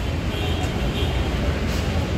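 Steady low rumble of road traffic mixed with a general outdoor hubbub.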